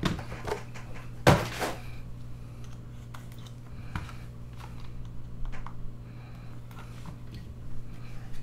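Cardboard trading-card box and packs handled on a table: a loud thump about a second in, then scattered light clicks and rustles, over a steady low hum.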